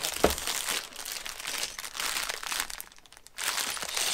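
A clear plastic bag of Lego pieces crinkling and rustling as it is pulled open by hand, with a sharp snap about a quarter second in. The crinkling eases off briefly near three seconds, then starts again.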